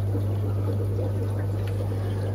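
Steady low hum of aquarium equipment, with a faint watery trickle from the air-driven sponge filters.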